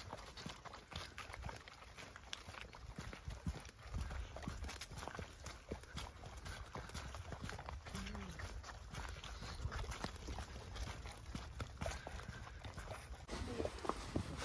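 Horses' hooves walking on a muddy dirt track: a steady, irregular clip-clop of hoof falls.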